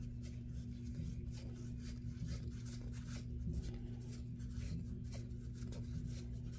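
UNO playing cards being sorted through by hand: a quick run of soft flicks and slides as card slips over card, several a second. A steady low electrical hum runs underneath.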